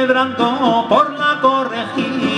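Male voices singing a traditional Spanish romance, drawing out wavering, gliding notes, over acoustic guitar and mandolin.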